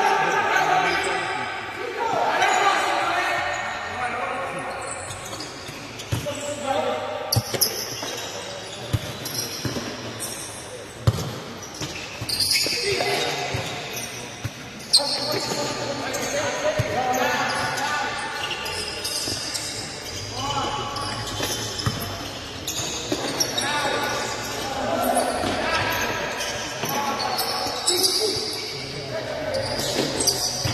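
Futsal ball struck and bouncing on an indoor court, with several sharp kicks standing out, among players' indistinct shouts, all echoing in a large hall.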